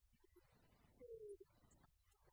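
Near silence: faint room tone, with one short falling tone about a second in.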